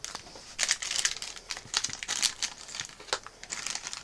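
A blind-bag packet and the small pieces inside it crinkling as they are handled and the contents pulled out: a run of irregular rustles and crackles.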